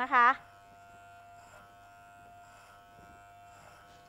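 Electric hair clippers buzzing steadily and faintly as they are run over a comb, cutting away the hair that sticks up through its teeth; the buzz stops near the end.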